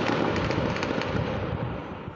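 Gunfire from a shootout in a dense urban area: many rapid shots running together into a continuous crackle with their echoes, thinning a little near the end.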